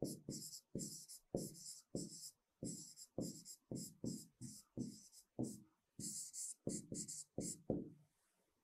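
Stylus tip scratching and tapping on an interactive whiteboard screen while a sentence is handwritten: a faint, quick series of short separate strokes, about two to three a second.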